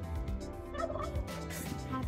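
A short, warbling laugh about a second in, over a steady low hum inside the moving car's cabin.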